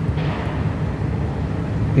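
A steady low background rumble, with a soft brief hiss shortly after the start.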